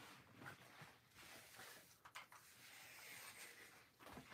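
Near silence: room tone, with a few faint clicks and light rustles.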